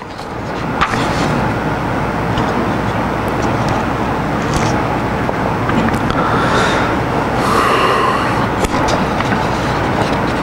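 Audience applauding: a dense, even clatter of many hands clapping that swells up over the first second and holds steady.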